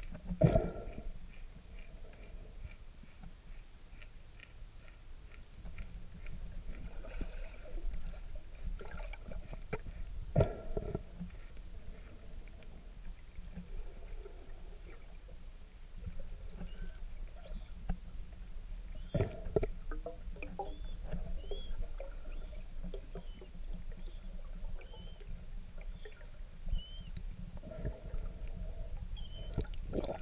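Underwater recording: a string of short, high manatee squeaks, repeating about every half second to a second through the second half, over a low rumble of water noise. A few loud knocks, about three, are heard: near the start, a third of the way through, and just before the squeaks.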